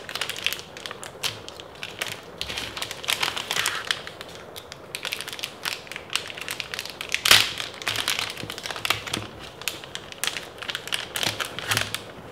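Clear plastic zip-lock bag crinkling as it is handled, pulled open at its seal and reached into, a dense run of sharp irregular crackles with the loudest crinkle a little past halfway.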